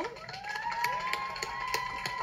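An emergency-vehicle siren sounding from the street, rising in pitch over about the first second and then holding one steady high tone.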